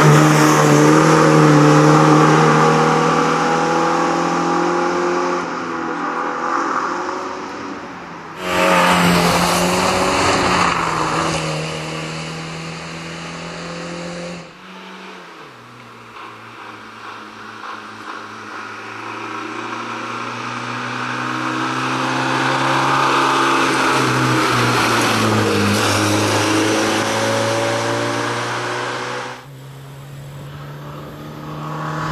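Fiat 125p rally car's four-cylinder engine revving hard as the car drives past, heard in several cut-together passes. The note fades as the car pulls away, comes back loud at a cut about eight seconds in, then builds again as the car approaches from a distance. The pitch rises and drops with the gear changes.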